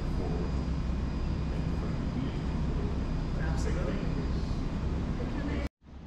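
Open-air ambience: a steady low rumble with faint, indistinct background voices. It cuts out abruptly for a moment near the end, and a quieter ambience follows.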